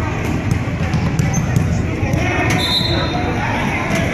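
Basketballs bouncing on a hardwood gym floor in irregular knocks, over the murmur of voices in a large, echoing gym.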